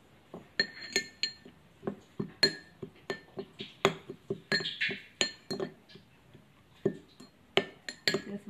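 Metal spoon clinking and scraping against a small ceramic bowl while stirring a chili-lime dipping sauce: many irregular clinks, each ringing briefly.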